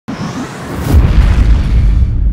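Logo-intro sound effect: a swelling whoosh that lands on a deep boom about a second in, then a low, sustained rumble.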